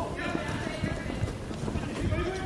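Irregular low thuds of players' running footsteps and ball touches on an artificial-turf futsal court, with faint distant voices of players.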